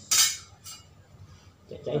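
Metal clinking of knife and golok blades knocking together as they are handled: one sharp, ringing clink about a quarter second in, then a fainter one just after.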